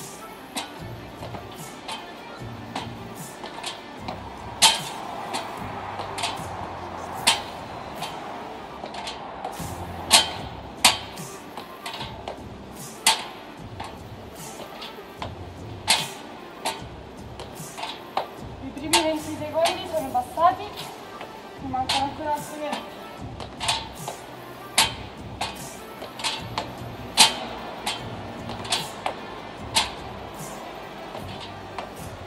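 Feet on a metal step ladder during step-ups: sharp knocks at an uneven pace, roughly every second or two, over steady background music.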